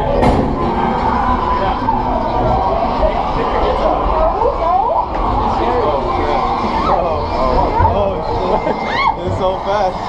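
Loud, dense haunted-attraction din: indistinct voices over a steady droning soundtrack, with a few short rising and falling cries.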